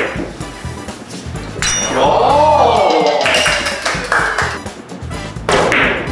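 Background music with a steady low line, overlaid by an edited sound effect about a third of the way in: a sudden burst, then a tone that rises and falls and a slowly falling tone. Sharp clicks of billiard balls being struck come near the start and near the end.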